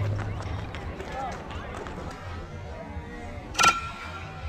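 Faint spectator voices, then about three and a half seconds in, a single sharp, ringing ping of a youth baseball bat hitting a pitched ball.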